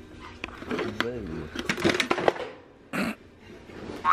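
A low voice briefly in the background, with several sharp clicks and a short rustle about three seconds in as plastic pet bowls and a water bottle are handled on a store shelf.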